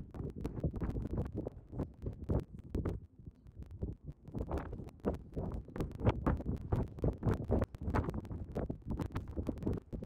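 Wind rumbling on a phone's microphone at ground level, with irregular soft scratchy strokes of a grooming brush on a Belgian draft horse's coat.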